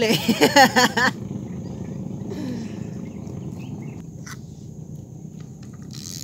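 A man's short burst of laughter in the first second, then a low, even outdoor background with a few faint clicks a few seconds in.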